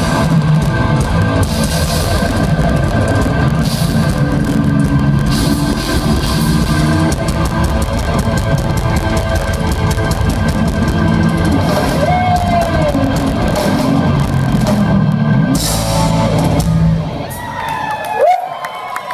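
Live rock band playing loud: drum kit, electric guitar and keyboards. The music drops off about a second before the end.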